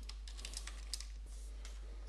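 Typing on a computer keyboard: several separate, irregular keystrokes, with a steady low hum underneath.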